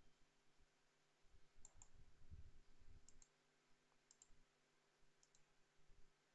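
Faint clicks of a computer mouse: four quick double clicks, about a second apart, over near-silent room tone, with some faint low thudding in the first half.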